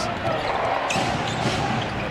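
Basketball being dribbled on a hardwood court, with short bounces over steady arena crowd noise.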